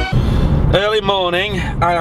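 Car interior noise while driving: a steady low engine and road rumble inside the cabin, with a man's voice starting a little under a second in.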